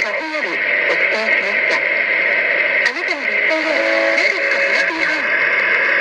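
Japanese Highway Radio traffic broadcast received on 1620 kHz AM: an announcer's voice in short phrases under steady static and hiss.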